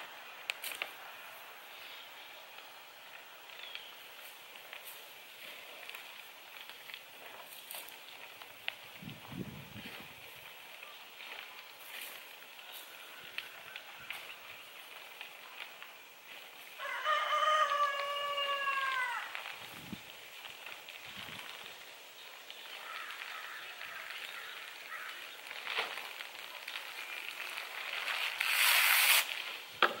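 A rooster crows once about seventeen seconds in, a drawn-out multi-part crow whose notes drop in pitch at their ends. Plastic sheeting rustles faintly throughout, with one loud rustle just before the end.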